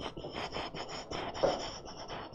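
Fingers scratching through hair: an irregular run of short rubbing, scratching strokes, loudest about one and a half seconds in.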